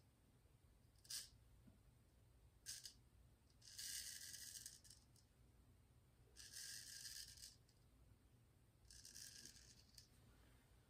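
Gold Dollar Classic straight razor scraping through two days of lathered stubble, faint. Two quick short strokes come first, then three longer strokes of about a second each.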